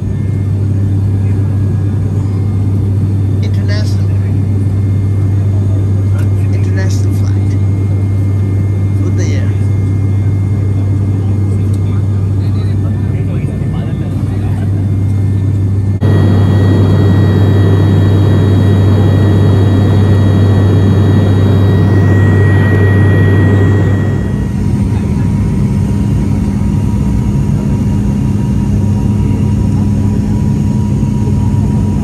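Turboprop airliner's cabin drone in flight: a loud, steady low propeller hum. About halfway through it jumps louder with more hiss, and some eight seconds later it settles into a lower hum with a steady higher tone over it.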